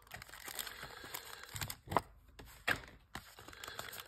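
Plastic blister packaging and foil trading-card pack wrappers crinkling and crackling as they are handled, with a couple of sharper snaps about two seconds in and again a little before three seconds.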